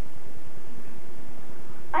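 Steady hiss with a low, regular buzz underneath, the noise of an old camcorder tape recording; a voice begins at the very end.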